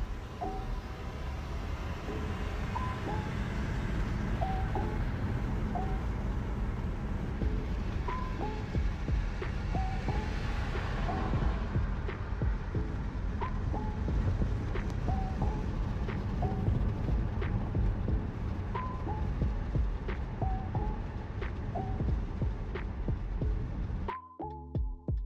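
Steady low rumble of road noise heard inside a moving car, with background music playing over it: short melodic notes recurring every second or so.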